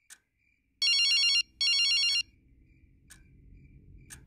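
A phone ringing: two short electronic trilling rings, each about two-thirds of a second long, one right after the other about a second in.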